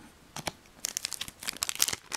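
Foil trading-card booster-pack wrapper crinkling as it is handled: a few isolated crackles, then a dense run of crinkling through the second half.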